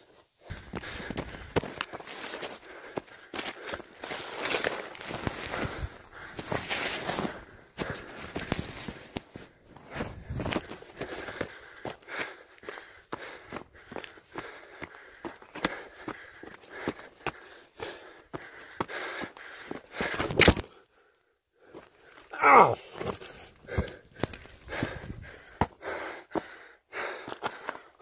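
A person breathing heavily while hiking uphill, with loud breaths every couple of seconds. Footsteps crunch on snow and loose rock throughout, and about three quarters of the way through there is a short voiced exhale.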